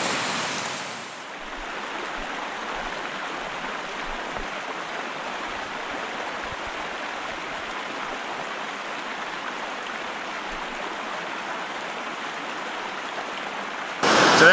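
Steady rush of a river running over rapids, a little louder and brighter in the first second.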